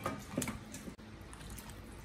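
Boiled pig's trotters dropped by hand into a stainless-steel bowl of ice water: a short, soft splash about half a second in, then low water movement.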